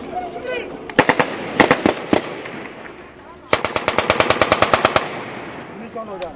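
Small-arms gunfire: a few single shots about a second in, then a long automatic burst of about a dozen shots a second lasting about a second and a half, starting around three and a half seconds in.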